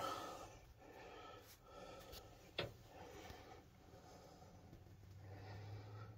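Near silence: faint room tone with one soft click about two and a half seconds in.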